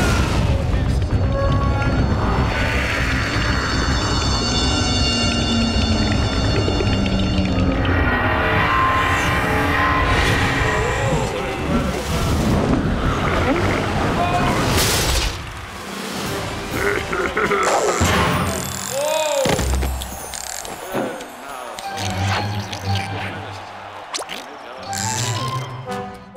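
Animated cartoon soundtrack: background music mixed with comic sound effects, including a sudden boom-like hit about halfway through and sliding, gliding effects a few seconds later, over wordless vocal sounds.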